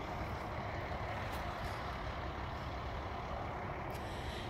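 Steady drone of distant highway traffic, mostly heavy trucks, with no separate events standing out.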